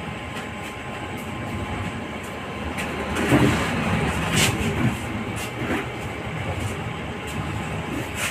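Vehicle noise: a steady, noisy rumble that swells to its loudest about three to four seconds in, with a few short clicks.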